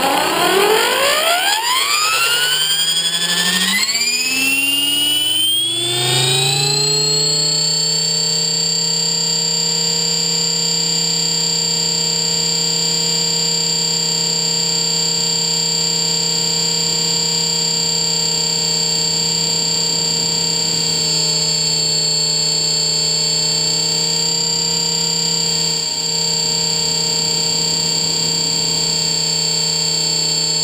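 Blade 400 electric RC helicopter's motor and rotor spooling up, heard from on board: a whine that rises steadily in pitch over the first six or seven seconds, then settles into a steady high whine at flying speed.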